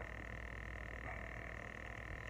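Faint, steady high-pitched drone holding one pitch, with a low hum beneath it; a constant background sound with no other event of note.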